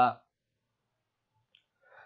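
A man's voice ends a phrase, then near silence with a single faint click about one and a half seconds in.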